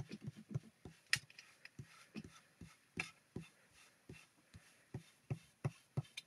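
Soft, irregular taps and clicks, a few each second, of an ink-loaded blending tool being dabbed onto glycerin-soaked cardstock on a glass craft mat.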